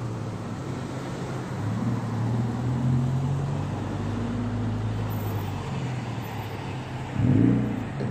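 Passenger cars creeping past one after another at close range in a slow line of traffic. Their engines make a steady low hum, with tyre and road noise underneath.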